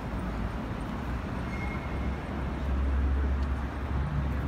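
City street traffic noise with a low rumble that swells about two and a half seconds in and eases off near the end.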